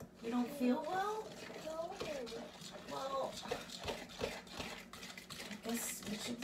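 A child's voice making wordless, up-and-down sounds for the first few seconds, then light clicks and taps of a fork stirring cake batter in a bowl. A faint steady hum runs underneath.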